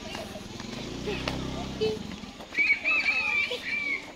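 A small engine hums steadily at low revs and fades away about two seconds in. It is followed by children's high-pitched shouts and calls, the loudest sound here.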